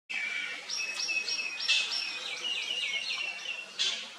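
A bird singing a quick run of short, high repeated notes, each dropping in pitch, about four a second, over steady outdoor background noise.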